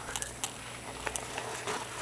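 Handling noise from a handheld camera being moved about: faint rustling with a few light clicks and taps, over a low steady hum.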